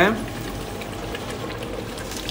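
Large steel pot of water at a vigorous rolling boil, bubbling steadily.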